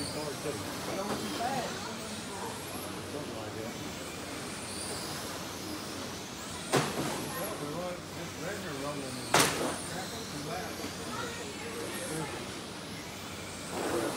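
Electric RC touring cars racing on a carpet track: a steady mix of high motor whines that glide up and down as the cars pass. Two sharp knocks cut through near the middle, about two and a half seconds apart.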